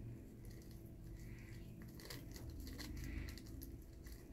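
Faint crinkling and rustling of a paper packet, with small ticks, as oxalic acid powder is tipped out of it into a glass jar of water.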